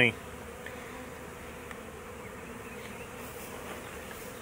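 Honeybees humming steadily over an open hive, one even, pitched drone. The colony is queenless, and this agitated roar is how queenless bees behave.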